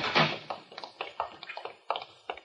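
A quick run of light taps, about four a second, growing fainter: a sound effect in a 1945 radio drama recording.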